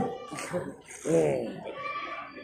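A person's voice: one short, drawn-out vocal sound with falling pitch about a second in, between bits of conversation.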